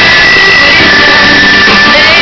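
Live band playing an instrumental passage with no singing: electric guitar holding long high notes over keyboards, recorded very loud.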